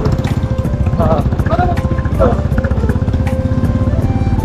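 Motorcycle engine running steadily under way, a fast even firing beat heard from on the bike, with a few brief voice sounds over it.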